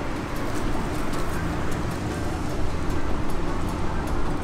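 Steady road traffic noise.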